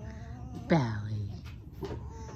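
A fox complaining: a faint whine at the start, then a loud cry about two-thirds of a second in that drops steeply in pitch and trails off into a low tone for about half a second.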